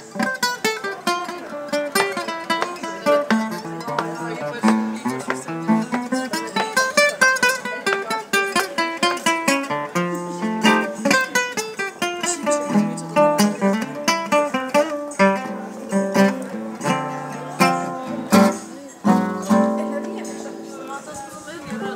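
Solo nylon-string classical guitar played fingerstyle: quick runs of plucked melody notes over moving bass notes.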